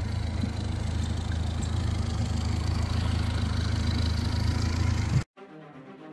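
Honda four-stroke outboard motor idling steadily, a low even purring. About five seconds in it cuts off abruptly and quieter intro music takes over.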